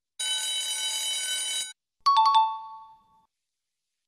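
Quiz countdown timer sound effects: a steady electronic alarm tone rings for about a second and a half as time runs out, then after a short gap a few quick clicks and a two-note chime stepping down in pitch sound as the answer is revealed.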